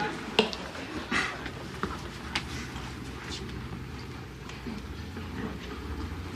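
A quiet stretch of low, steady room hum with a few faint, scattered clicks and short scrapes.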